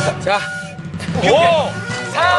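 Several men's voices shouting together in a countdown, two loud calls about a second apart, over background music.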